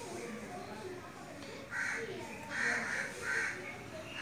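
A bird giving three short, harsh calls in the background, starting a little under two seconds in and spaced under a second apart, over faint murmured speech.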